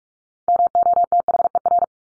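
Morse code tones sent at 45 words per minute: a rapid string of short and long beeps on one steady pitch, spelling the word "mother". The beeps start about half a second in and stop just before the end.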